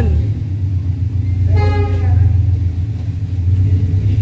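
Toyota 86's flat-four engine idling with a low, steady drone, not revved.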